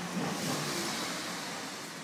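A small van driving past on the street, its tyre and engine noise swelling about half a second in and then slowly fading.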